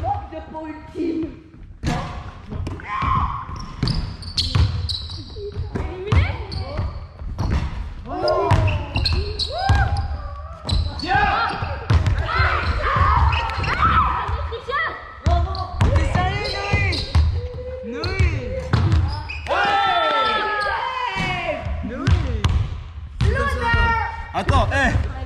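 Basketballs bouncing on a sports-hall floor in sharp, repeated strikes, under many children's overlapping excited shouts and calls, all echoing in a large gym.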